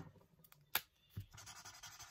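Marker tip scratching faintly on paper from about a second and a half in, after a single sharp click and a soft knock. The marker is being tried on paper after it would not write.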